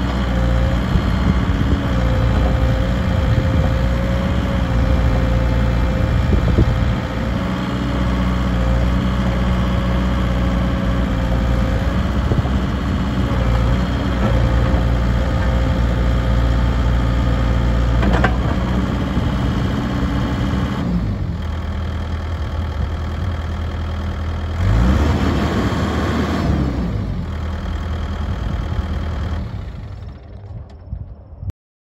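2007 Volvo BL70B backhoe loader's diesel engine running as the backhoe arm is worked, with a steady whine that wavers over the engine note. About two-thirds of the way through the engine drops to a lower speed, then briefly revs up and back down.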